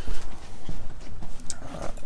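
Footsteps on a concrete floor: a few irregular hard steps at a walking pace, with some phone-handling rumble.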